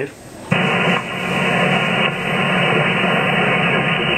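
Shortwave transceiver's receiver audio on upper sideband: steady static hiss that comes on suddenly about half a second in as the rig drops from transmit to receive, cut off sharply above about 3 kHz by the 3 kHz filter.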